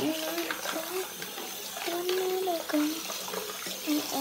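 Tap water running steadily from a faucet into a sink partly filled with water. A voice sings a few short held notes over it.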